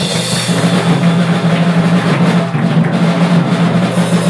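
Live rock band playing loud and steady: drum kit with bass drum and snare, over electric guitars and bass.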